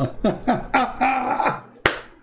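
A man's voice making short wordless vocal sounds, with a single sharp click near the end.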